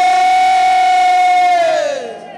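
A man's voice through a microphone holding one long, high note, then sliding down in pitch and trailing off near the end.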